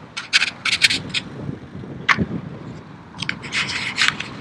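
Irregular short scraping and rubbing noises close to the microphone while riding a bicycle. The noises come in quick clusters during the first second and again near the end, over a low steady rumble.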